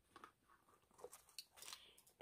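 Near silence with a few faint clicks and rustles from a leather handbag being handled as its flap is lifted open, mostly in the second half.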